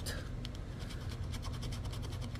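Scratch-off lottery ticket being scratched with the edge of a poker-chip-style scratcher: a steady, quick run of short scraping strokes.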